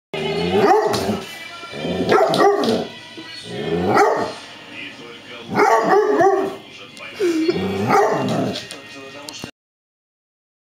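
A dog 'talking back' with a run of about five drawn-out vocalizations, each about a second long and wavering up and down in pitch, with short pauses between. The sound cuts off abruptly near the end.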